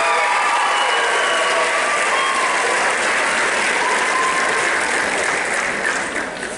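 Audience applauding, with a few voices cheering and whooping in the first seconds; the applause fades right at the end.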